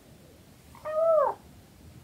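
Siamese kitten meowing once, a short call about a second in that falls in pitch at the end.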